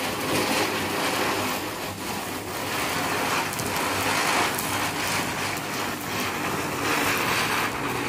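Ground firework fountain spraying sparks with a steady hiss that swells and eases slightly.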